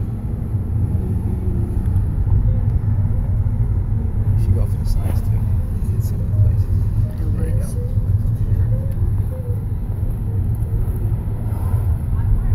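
Car's engine and road noise heard from inside the cabin while driving, a steady low rumble.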